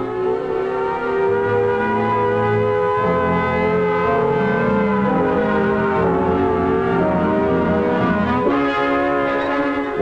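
Orchestral film music with sustained brass chords, the held tones wavering slightly while the lower notes shift every few seconds.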